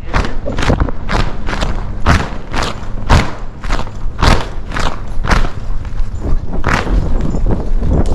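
A horse's hooves thudding on arena sand at a moving gait, about two heavy thuds a second, heard from the saddle over a steady low rumble.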